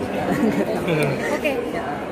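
Speech only: people talking in an interview, with the chatter of other voices around them.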